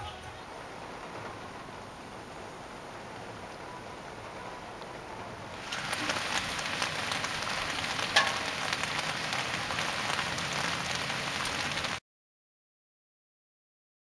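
Steady rain on a car, heard from inside through the windshield. About six seconds in it gives way to louder, brighter outdoor rain with scattered drop ticks over pavement and a gutter of running runoff, with one sharp tick a couple of seconds later. The sound cuts off abruptly to silence about two seconds before the end.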